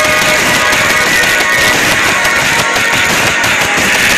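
Loud, steady background music with guitar.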